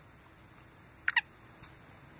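Black francolin calling: two sharp, harsh notes in quick succession about a second in, each falling in pitch, and a fainter third note just after.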